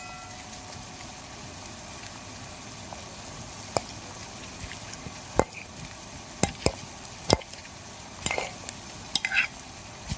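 Steady sizzle of food frying in a pan, with sharp clicks and knocks of a utensil stirring against the pan. The knocks start about four seconds in and come more often toward the end.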